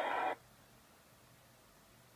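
Near silence: a steady background hubbub cuts off abruptly about a third of a second in, and nothing is heard after that.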